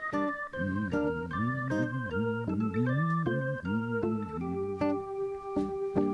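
Electronic keyboard with an organ voice playing an instrumental passage: a melody of short notes changing every fraction of a second over a lower moving line.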